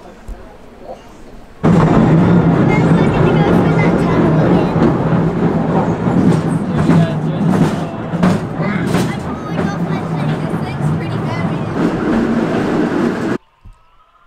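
Katoomba Scenic Railway carriage running down its steep incline track: a loud, steady rumble and rattle that starts about a second and a half in and cuts off suddenly near the end.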